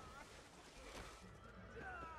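Quiet film soundtrack audio with faint wavering pitched sounds, one at the start and one near the end.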